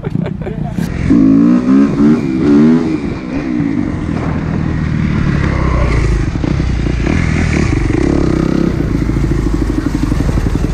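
Kawasaki dirt bike's single-cylinder four-stroke engine revving in several quick blips, then running steadily under way, its pitch rising a little toward the end.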